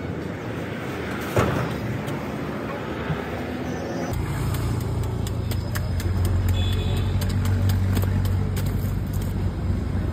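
Roadside traffic noise. From about four seconds in, a steady low engine hum joins it, and a steel ice pick chips into a block of ice with a run of short, sharp clicks.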